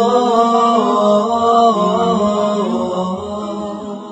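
Wordless vocal chant, a voice holding long 'oh' vowels that step slowly up and down in pitch over a steady lower drone, fading toward the end.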